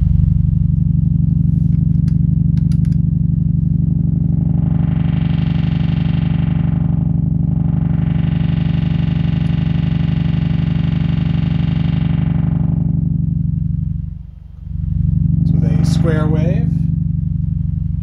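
A low, buzzy square-wave synthesizer tone played through a four-pole diode-ladder low-pass filter with its resonance turned down. As the filter's cutoff knob is turned, the tone brightens about four seconds in, dulls briefly, and is brightest for a few seconds. It then closes back to a dull low buzz that nearly drops out around fourteen seconds before returning.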